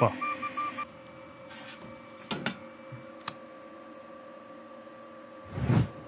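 Two Trees SK1 3D printer running: a steady whine from its motors, stepping in pitch briefly at the start, with a few light clicks. A short louder rustling noise comes shortly before the end.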